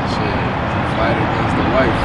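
Steady city traffic noise, a continuous rumble and hiss, with a few faint, brief voice sounds about a second in.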